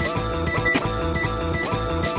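Music from a DJ's turntable set: a record playing through the mixer with a steady beat.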